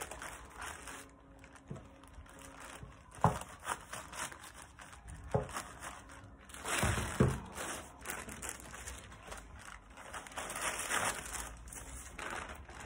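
Plastic bag sheeting and baking paper crinkling and rustling as they are handled and smoothed, with a few sharp knocks along the way.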